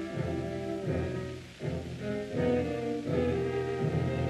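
Orchestral background score: sustained bowed strings over a repeating low pulse, with a brief drop in loudness partway through.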